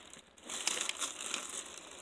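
Plastic bag of iceberg lettuce crinkling faintly as it is handled.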